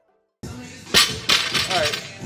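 Two sharp metal clanks of barbell weight plates about a third of a second apart, over the echoing noise of a weight gym, following a brief silence; a man's voice starts near the end.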